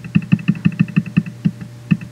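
Rapid, evenly spaced computer clicks, about six a second for just over a second, then two more spaced-out clicks near the end, each click stepping the letter spacing down one notch.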